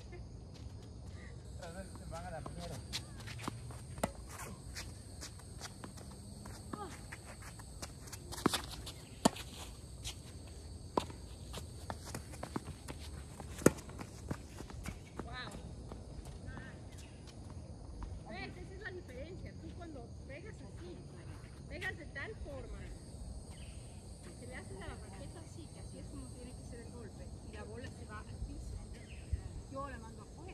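Tennis rally: sharp pops of a ball struck by rackets and bouncing on a hard court, coming irregularly every second or two, the loudest about halfway through. A steady high insect chorus runs underneath.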